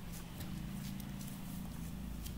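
Faint low background hum with a few light, scattered clicks.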